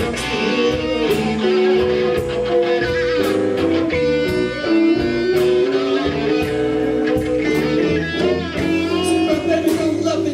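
Live electric blues band playing: an electric guitar leads with sustained notes that bend in pitch, over bass and a drum kit with steady cymbal and drum hits.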